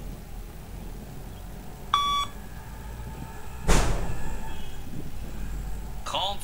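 A single electronic beep from the Luc Léger shuttle-run (beep test) audio, about two seconds in and lasting about a third of a second; the beep marks when the runner must reach the line and turn. Just under two seconds later, a loud rush of noise starts and fades over about two seconds.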